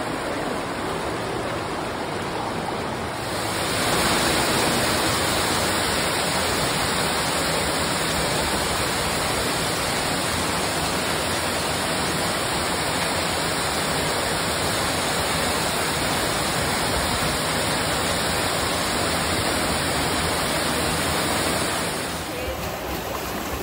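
Steady rush of creek water and waterfalls, growing louder about three and a half seconds in and then holding steady.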